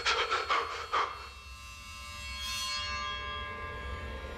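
A man panting in a quick run of heavy breaths during the first second, followed by tense music underscore made of held, sustained tones.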